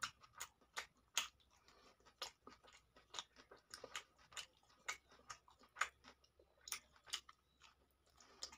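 Close-miked eating sounds of rice and chicken eaten by hand: faint chewing with sharp, irregular wet mouth clicks, a few a second.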